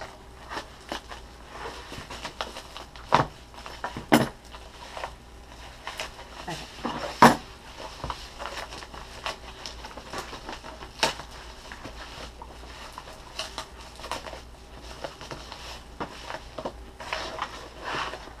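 A knife cutting into a brown paper mailer, then paper and packaging rustling and crinkling as hands pull the package open, with scattered clicks and a few sharp knocks.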